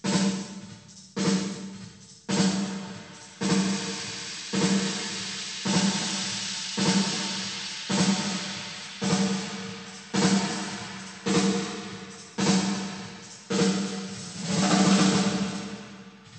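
A snare drum hitting about once a second through the UAD Lexicon 224 digital reverb plug-in's 'Big 80's Snare' program, each hit followed by a long reverb tail. The reverb's treble decay time is being changed: the bright top of each tail dies quickly at first, then rings on much longer from about three seconds in.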